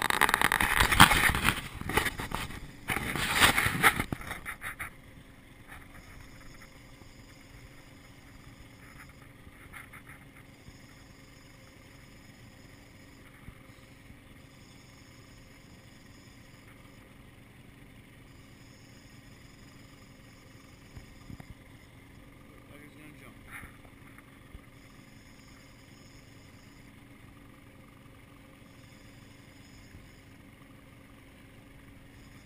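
A 50 hp outboard motor running steadily, a low even hum. A loud, rough noise covers roughly the first four seconds, and there are a few faint clicks later on.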